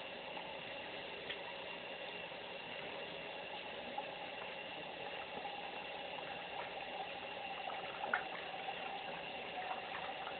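Water running steadily from a tap as a makeup brush is rinsed under it, with a few faint knocks.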